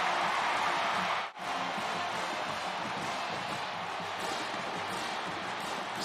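Large football-stadium crowd cheering a home-team touchdown as a steady wall of noise. It cuts out abruptly about a second in and comes back slightly quieter.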